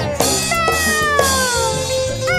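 Meowing over joged bumbung bamboo gamelan music: a short call just after the start, then one long meow falling in pitch for about a second.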